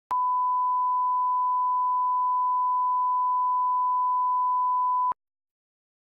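Bars-and-tone reference test tone: one steady, pure beep at a single pitch, lasting about five seconds, with a click as it starts and as it cuts off suddenly.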